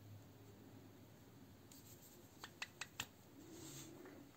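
Near silence, with four faint clicks in quick succession about two and a half seconds in and a soft rustle near the end, from fingers handling a sewing needle and thread while knotting the thread onto needle lace.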